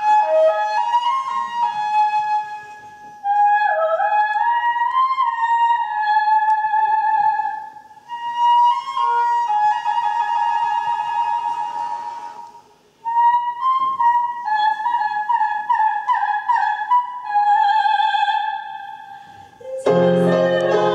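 Solo flute playing an interlude that imitates nightingale song: high trilling and warbling phrases with quick glides, in about four phrases separated by short breaths.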